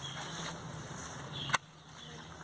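Hand pruning shears snapping shut once with a sharp click about one and a half seconds in, over a low steady background hum.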